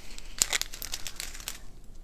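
Small plastic zip bags of resin diamond-painting drills crinkling as they are handled and set down, with many small crackles and one sharper click about half a second in.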